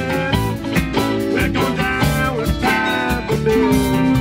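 Rock band playing an instrumental passage with no vocals: electric guitars over bass and a drum kit, in a live recording.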